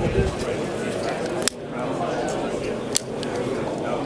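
Two sharp clicks about a second and a half apart from a long-nozzle utility lighter being sparked to light a fuel-soaked swab. Trade-show crowd chatter runs underneath.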